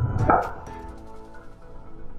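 Background music, with one sharp impact a fraction of a second in: a driver's clubhead striking a golf ball.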